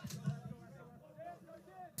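Faint, distant voices of players calling out on the field over a low field ambience, with a sharp click near the end.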